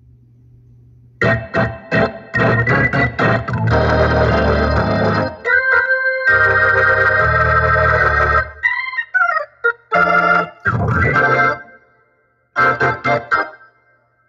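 Hammond B3X organ, played at full volume through a horn driver and woofers: short chord stabs, then long held chords with heavy bass. About nine seconds in there is a brief sliding, wavering run, followed by more chords, a short gap, and quick stabs near the end.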